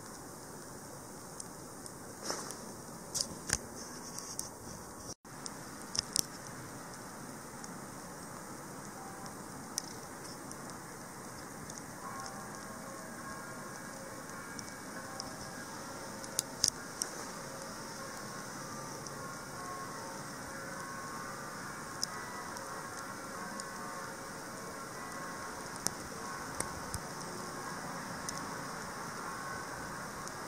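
Steady quiet hiss of snowy outdoor air with scattered sharp clicks. From about twelve seconds in, faint tones of distant bells come in, ringing a sequence of notes.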